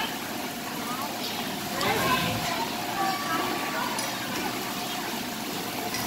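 Background voices and chatter over steadily running, splashing water from a water-play table and its overhead pouring stream.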